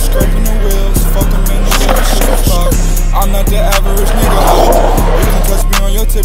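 Hip-hop track with a steady beat, mixed with skateboard wheels rolling on asphalt; a louder rush of noise swells about four to five seconds in.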